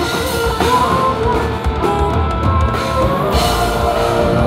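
Live rock band playing loudly, with a drum kit and guitar to the fore.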